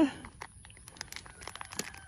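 Faint, irregular crackling and rustling of dry vegetation, a scatter of small clicks.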